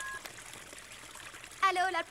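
Cartoon sound effect of water gushing from a burst pipe and splashing onto the floor: a steady rushing, pouring noise. A voice starts speaking near the end.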